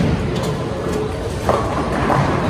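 Bowling ball rolling down a wooden lane, a steady rumble over the din of the bowling alley, with a brief clatter about a second and a half in.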